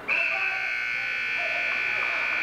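Gymnasium scoreboard buzzer sounding one long steady tone that starts sharply, signalling the end of a wrestling period.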